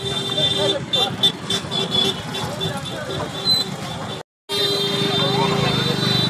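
Street crowd voices and road traffic, with a steady high tone running under them. The sound cuts out completely for a moment about four seconds in.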